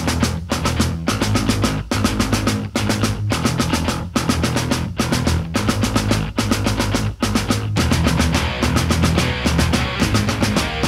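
Loud hardcore/crossover band music: heavy drums and bass driving a steady beat, the sound growing denser about eight seconds in.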